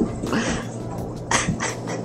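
A young man's short, breathy vocal outbursts, a few in quick succession, without words.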